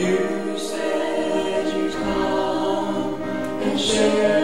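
A man and a woman singing a gospel song together, accompanied by piano; the voices come in at the start and carry on.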